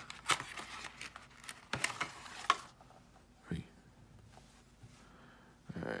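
A sealed cardboard trading-card box being torn open by hand: a quick series of sharp crackles and tearing snaps over the first two and a half seconds, then quiet handling.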